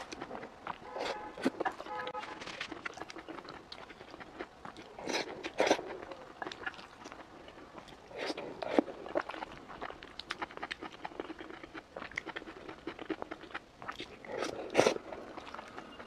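A person chewing and eating spoonfuls of fried eggs in tomato sauce with green peppers, with many short sharp mouth clicks and knocks, the loudest about five, nine and fifteen seconds in.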